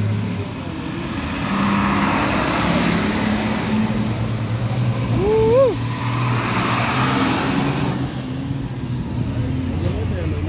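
Diesel engines of Mitsubishi matatus running as they drive through floodwater, with a steady low engine hum and the rush of water sprayed off the wheels. About five seconds in, a brief pitched sound glides upward.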